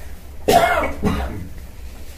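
A person clears their throat: a sudden rasping burst about half a second in, followed by a second, shorter one.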